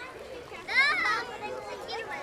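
Crowd of people chattering, with a child's loud, high-pitched shout or squeal lasting about half a second, starting just under a second in.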